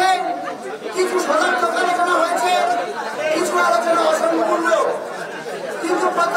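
Speech: a man's voice over a microphone, with other voices chattering around it.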